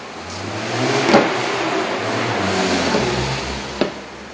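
A motor engine, as of a vehicle passing, swelling over the first second and fading after about three seconds. A sharp knock sounds about a second in and another near the end.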